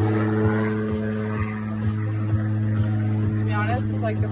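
Background workout music: held synth chords over a steady kick-drum beat of about two beats a second. A voice comes in near the end.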